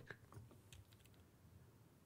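Near silence, with a few faint laptop keyboard clicks in the first second.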